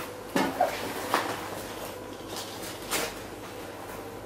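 A Salomon rucksack being handled: a few soft knocks and rustles, with a low steady hum underneath.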